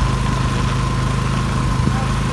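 Heavy tropical rain falling as a steady, even hiss, with a steady low motor hum running underneath it.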